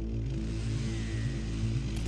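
Background music: a steady bed of sustained low notes and chords that shift in steps.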